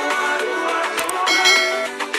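Background music with short click sound effects and a bright bell chime about one and a half seconds in, the sound effects of an animated subscribe-and-notification-bell graphic.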